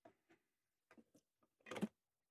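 Near silence, with a few faint clicks and rustles from things being handled, and one short, louder rustle near the end.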